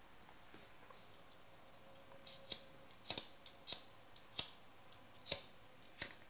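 A series of about eight sharp, irregular clicks in the second half, over faint room tone.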